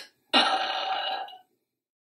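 A woman's short vocal sound, held steady for about a second.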